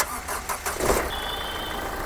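Nissan Terrano engine starting up with the bonnet open and settling into a steady idle. A short high steady tone sounds near the middle.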